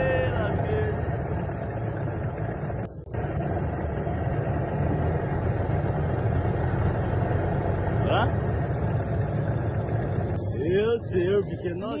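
Small boat's outboard motor running steadily, recorded on a phone, with a brief cut-out about three seconds in.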